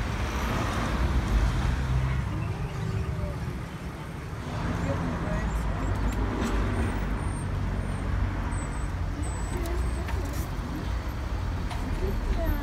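Street ambience: a steady low rumble of road traffic, with faint voices of people in the background.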